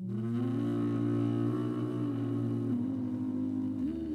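Jazz trio music: a reed instrument comes in suddenly with a note that scoops upward and is held, bending slightly in pitch, over a steady low drone.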